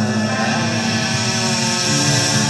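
Nu-metal band playing live in an arena, heard from the audience: loud, held low guitar and bass notes.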